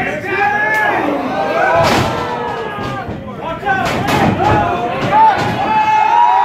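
Crowd of wrestling spectators shouting and talking around the ring, broken by several heavy thuds of wrestlers hitting the ring canvas. The loudest thud comes about two seconds in, with others around four and five and a half seconds.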